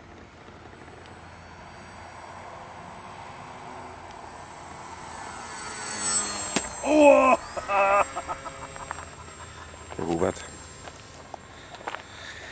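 SkyCarver radio-controlled model glider flying in and passing low and close: a rushing of air that grows steadily louder for about six seconds. Just after it passes, voices exclaim two or three times.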